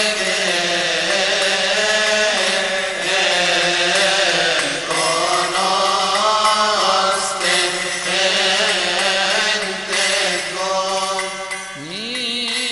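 Music: a chanted hymn, long melismatic vocal lines that slowly shift in pitch over a steady low held note.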